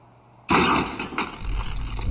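A sudden crash and clatter of a cardboard box of toy soldiers falling to the floor, with a few sharp knocks, then a deep rumble that swells in the second half.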